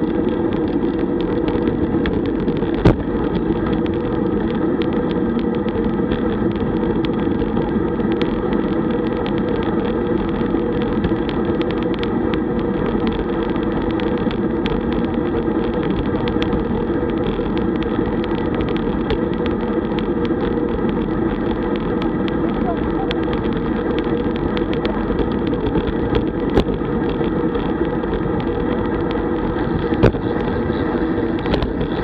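Steady wind and road noise picked up by a camera on a road bike riding at about 30 km/h, with two sharp knocks, one about three seconds in and one a few seconds before the end.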